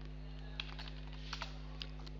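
Computer keyboard typing: a handful of separate keystrokes as a short command is typed and entered, over a faint steady hum.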